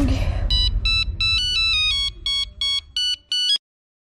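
Mobile phone ringtone: a quick melody of short electronic beeping notes stepping up and down in pitch, cut off abruptly as the call is answered.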